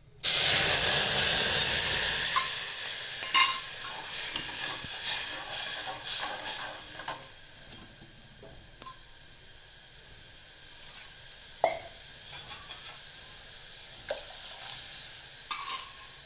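Red chilli, salt and turmeric spice water poured onto dry-roasted spices in a hot metal pot: a sudden loud sizzle that fades over several seconds into a quieter steady simmering hiss. A metal ladle clinks and scrapes against the pot now and then as the spice paste is stirred. The spices are being cooked in water instead of oil.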